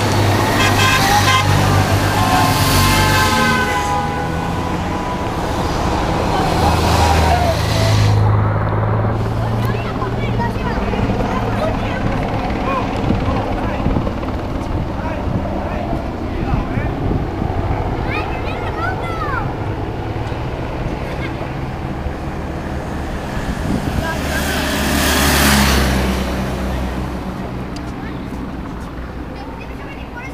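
Race-convoy motorcycles and cars passing on the road. Their engines swell and fade three times, near the start, around a quarter of the way in and near the end, with horn toots and spectators' voices.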